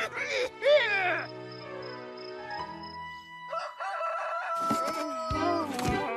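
Animated cartoon soundtrack: a short, shrill, crowing cry that sweeps up and then down in pitch in the first second, then background music with long held notes.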